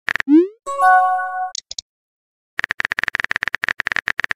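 Chat-app sound effects. A short rising bubble pop, then a brief chime of a few held tones, then from about two and a half seconds in a rapid run of keyboard-typing clicks.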